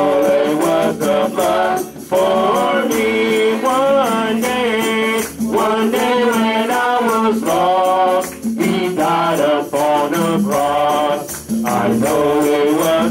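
Live worship singing amplified through a PA: sung phrases of long held notes, broken by short breaths every second or two, over a steady low accompaniment note and rhythmic shaker-like hand percussion.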